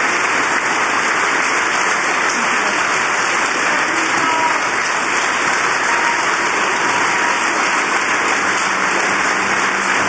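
Audience applauding steadily. A low, steady note comes in near the end.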